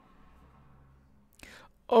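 Near silence with faint room tone, then a short breath about a second and a half in, and a man's voice starting to speak at the very end.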